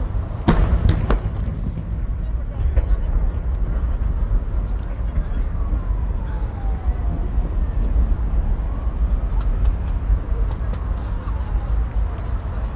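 Fireworks shells bursting, two loud booms about half a second and a second in and a fainter crack about three seconds in, over a steady low rumble and the voices of the crowd.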